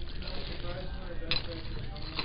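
Ceramic salt and pepper shakers clinking together inside a plastic bag as they are handled, with one sharp click about a second in.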